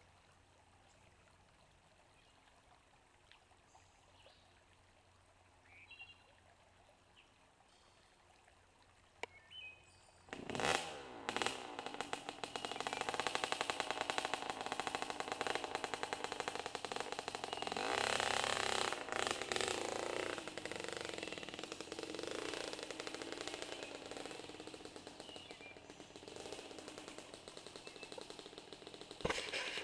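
About ten seconds of near quiet, then a dirt bike engine starts close by and runs with a rapid, even popping of firing strokes, louder for a couple of seconds around eighteen seconds in.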